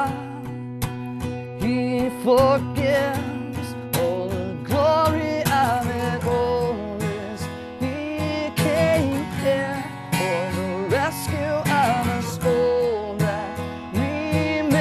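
A man singing a worship song while strumming an acoustic guitar, the voice holding and bending notes over a steady strum.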